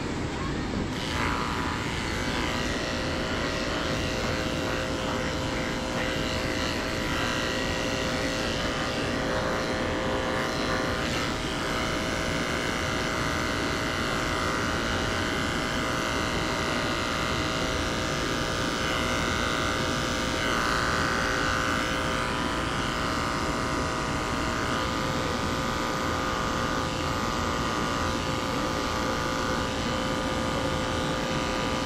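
Andis 2-speed electric dog grooming clipper running steadily with a constant hum, its blade shearing curly poodle fur on the leg.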